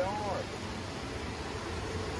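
Steady rush of a rocky mountain creek flowing over riffles.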